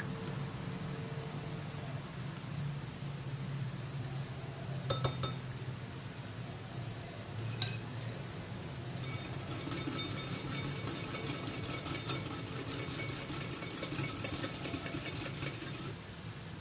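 Metal wire whisk beating against a glass bowl: a rapid, continuous run of clinks from about nine seconds in, after two single clinks of utensils on the glass. A steady low hum runs underneath.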